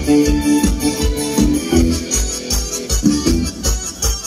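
Live band playing Thai ramwong dance music: an electronic keyboard melody in held, organ-like notes over a steady, fast drum beat.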